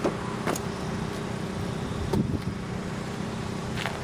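A motor vehicle engine idling steadily, with a few light knocks and a dull thump about two seconds in.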